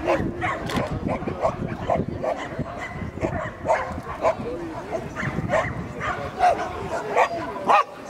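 A dog barking over and over in a rapid string of short barks, a few each second, with people's voices mixed in.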